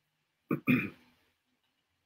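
A man clearing his throat in two quick bursts, about half a second in.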